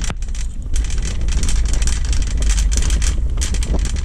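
Wind buffeting the microphone with a steady low rumble, over the irregular rattle of shopping cart wheels rolling across asphalt.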